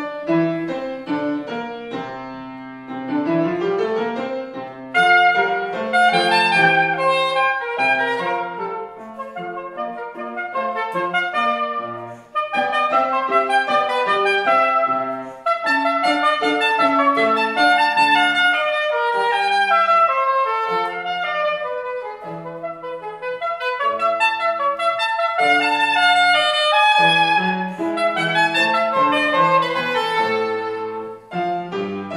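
Soprano saxophone playing a classical melody with piano accompaniment. The piano plays alone at first, and the saxophone comes in about five seconds in.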